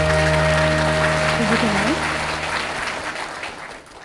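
Audience applauding over the band's held final chord at the end of a live song, with a brief voice calling out about a second and a half in. It all fades out near the end.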